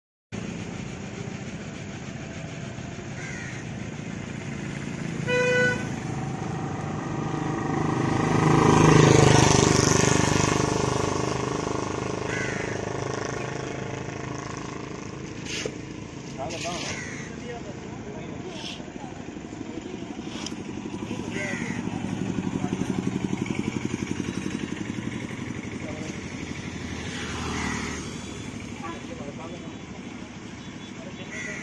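Road traffic passing: engines and tyres with a short horn toot about five seconds in. A vehicle passes loudly close by around nine seconds, and another passes more softly later.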